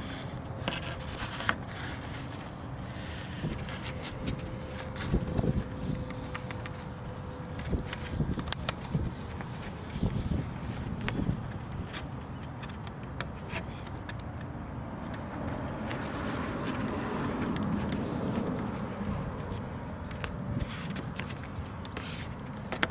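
Handling noise: scattered clicks and rubbing as hands press and smooth tape over the centre joint of a model glider's wing, over a steady outdoor background with a faint hum in the first few seconds.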